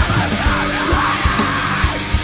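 Screamo / post-hardcore band recording: loud distorted guitars and drums under screamed vocals.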